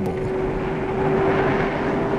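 Automotive gas turbine engine running: a jet-like rushing noise with a steady whine held at one pitch.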